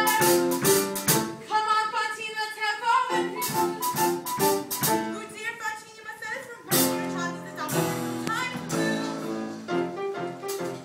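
Live stage-musical performance: a chorus of women singing together over instrumental accompaniment.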